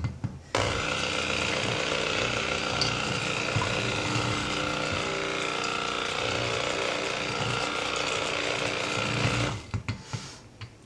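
Stick (immersion) blender running in a glass bowl of soap oils and lye water, starting about half a second in and cutting off shortly before the end: the raw soap batter being blended to emulsion.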